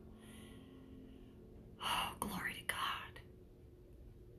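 A woman whispering quietly under her breath: a faint breathy sound early on, then a short run of whispered words about two seconds in.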